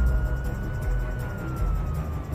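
A police car siren sounding one slow wail, its pitch rising and then slowly falling, over a low background music bed.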